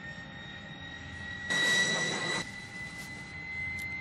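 Jet engine whine: a steady high tone that rises slightly in pitch. About halfway through, a louder rush lasts roughly a second.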